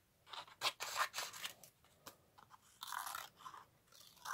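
Scissors cutting through inked card, with the paper handled between cuts: a few short snips in the first second and a half, then a longer cut about three seconds in.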